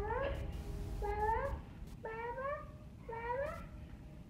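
Domestic cat meowing over and over: four calls about a second apart, each one rising in pitch.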